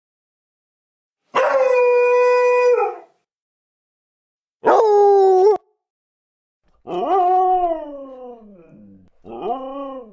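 Recorded dog howls from a dog-sounds app, played one after another: a held, steady howl a little over a second in that cuts off abruptly, a short howl that also stops abruptly, then a longer howl falling in pitch, and another howl beginning near the end.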